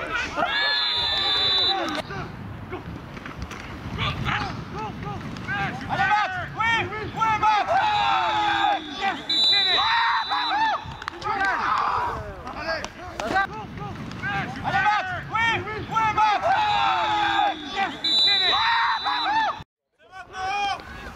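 Many voices shouting and calling out over one another, with several short, high, steady whistle blasts near the start, in the middle and near the end. The sound drops out briefly just before the end.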